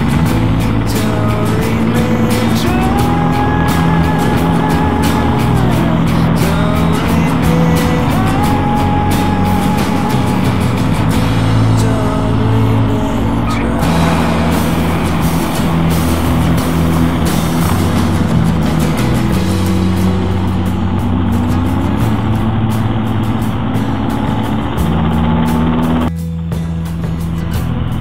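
Motorcycle engines running on the move, with the engine note stepping up and down as the throttle and gears change, and wind buffeting the microphone. About two seconds before the end, the wind noise suddenly drops as the bike slows to a stop.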